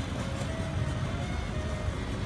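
Steady low rumble of outdoor background noise, with a few faint, briefly held notes of distant music.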